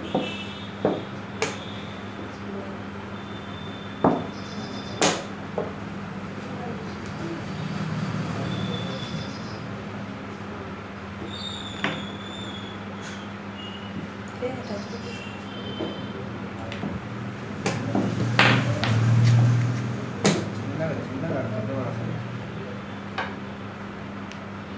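Plastic chess pieces set down and knocked against the board during fast play, with presses on a digital chess clock: a scattered series of sharp clicks and knocks over a steady low hum.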